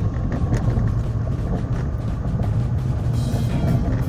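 Steady low rumble of a car's engine and tyres heard from inside the cabin while driving at road speed.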